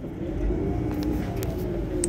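Iveco Crossway LE city bus engine, standing at the stop, briefly revving up and settling back down, its pitch rising and then falling over about two seconds.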